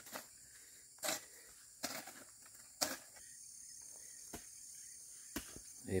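Quiet rural outdoor ambience: a steady, faint high insect hum with a handful of soft, irregular knocks.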